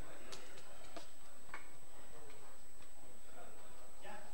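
A few scattered light clicks and knocks over a low murmur of voices.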